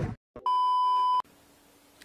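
A single steady electronic beep, a pure high tone lasting about three-quarters of a second that cuts off abruptly.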